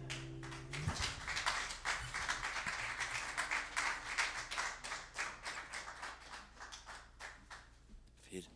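Small audience clapping, starting about a second in and dying away toward the end, as the final chord of acoustic guitar and bass fades out at the start.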